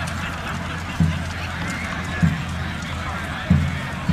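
Many voices of a large gathered crowd heard from afar, over a steady low rumble, with a short low thud about every second and a quarter.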